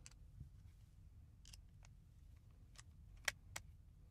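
Near silence broken by a few faint, sharp clicks of a screwdriver working on a plastic three-pin plug as the flex clamp is tightened, the loudest click about three seconds in.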